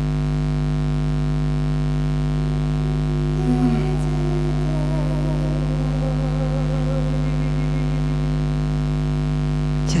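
A steady electrical-sounding hum holding several fixed pitches throughout, with a faint, muffled melody like distant singing from about three seconds in to about eight seconds.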